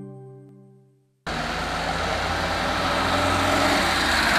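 A music ident fades out in the first second. After a brief silence, steady street traffic noise cuts in: cars driving along a town road.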